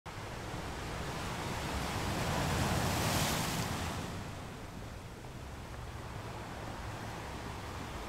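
Small waves washing onto a pebble beach, with some wind on the microphone. The rush swells and peaks about three seconds in, then settles to a steady wash.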